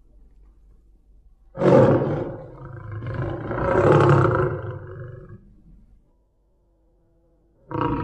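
A big cat roaring: one long roar starts about one and a half seconds in, swells again about four seconds in and fades out by six seconds. A short burst of the same call comes at the very end.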